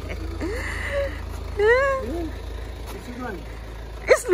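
People's voices making short exclamations that the recogniser did not write down, the loudest a rising-and-falling cry about one and a half seconds in, over a steady low hum.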